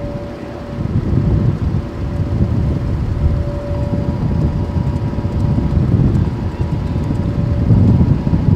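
Wind rumbling on the microphone, with a faint, distant outdoor warning siren holding one steady tone that swells and fades. A second, higher siren tone joins about halfway. The siren is sounding for the tornado nearby.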